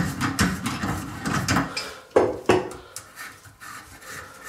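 Pliers clicking and scraping on a bathroom sink drain's bottom retaining nut as it is worked loose, a run of short metal-on-metal clicks with two sharper knocks about two seconds in.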